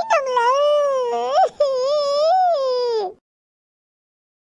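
A high-pitched voice wailing in long, wavering drawn-out cries, with a short break about a second and a half in, cutting off suddenly about three seconds in.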